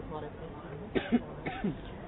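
A person coughing twice, about half a second apart, over faint background speech.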